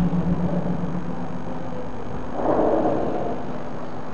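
Steady low background rumble with a soft swell of noise about two and a half seconds in.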